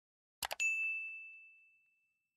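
Two quick mouse clicks followed by a single bright ding that rings on and fades away over about a second and a half: the sound effect of a subscribe-button animation's notification bell being clicked.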